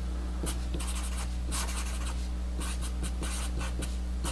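Sharpie permanent marker writing on paper in many short, irregular strokes. A steady low electrical hum runs underneath.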